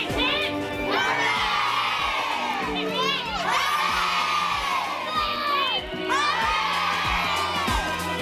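A crowd of children shouting and cheering together in three long swells that rise and fall, over music with a steady beat.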